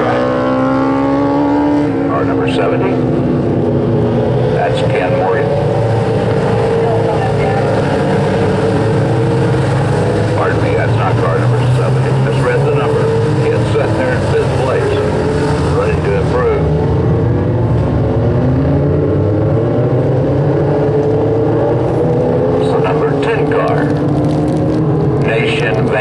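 A field of dwarf race cars, their motorcycle engines running hard on a dirt oval, several engine notes overlapping and rising and falling in pitch as the cars lift for the turns and accelerate down the straights. One car passes close by about halfway through.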